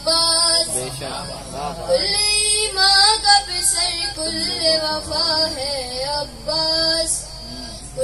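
A boy singing a devotional Urdu poem (manqabat) into a microphone in long held notes that bend up and down. His voice drops low near the end.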